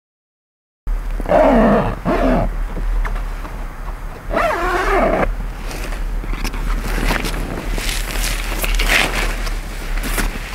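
A woman yawning twice as she wakes, each yawn a drawn-out vocal sound, the first falling in pitch. After that comes rustling of fabric as she moves about wrapped in a blanket.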